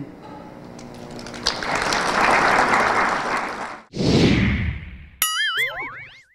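Audience applauding, swelling and then cut off about four seconds in. It is followed by a logo sting: a whoosh, then wobbling, boinging electronic tones.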